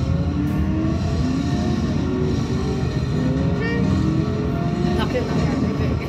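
Arcade racing-game cabinet sound: a steady car-engine drone whose pitch climbs and falls in slow glides, over game music.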